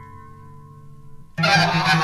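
Free-improvisation ensemble music: a few held tones die away quietly, then about one and a half seconds in the whole group enters loudly at once, with dense, busy wind-instrument lines over a low steady note.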